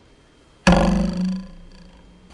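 A metal ruler twanged over a table edge: one sudden twang about two-thirds of a second in, its pitched tone dying away over about a second.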